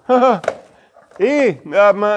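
Speech: a man's voice in two short phrases, with a brief pause between them.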